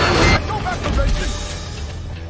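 Film soundtrack: loud fight-scene crashing with music cuts off abruptly about half a second in. Quieter background music follows, with a brief voice.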